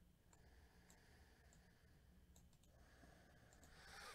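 Near silence: room tone with a few faint, scattered clicks and a short, soft rush of noise near the end.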